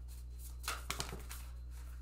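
Tarot cards being handled and separated from the deck in the hands: a short flurry of crisp card snaps and rustles about a second in, over a steady low hum.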